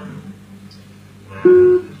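A single plucked string note sounds about one and a half seconds in, held briefly and then cut short, over a low steady hum.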